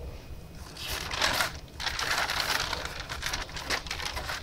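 Paper rustling as the pages of a spiral-bound notebook are handled and turned, in two bursts, the second longer.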